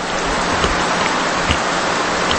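A steady, loud rushing hiss like rain, with a few faint ticks in it, filling a pause in speech.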